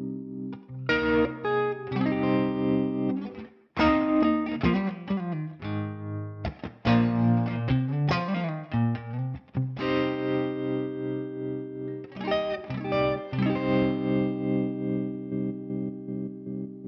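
Electric guitar played through a Magnetic Effects Electrochop optical tremolo pedal: slightly overdriven chords and short phrases whose volume pulses in a tremolo. There is a short break in the playing a few seconds in.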